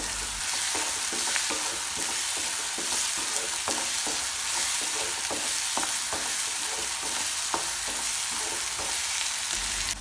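Chopped onions frying in oil in a pan: a steady sizzle, with a spatula scraping and tapping now and then as they are stirred.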